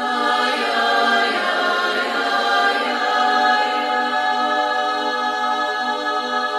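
Choral music: massed voices singing sustained chords that swell in sharply at the start and then hold steadily.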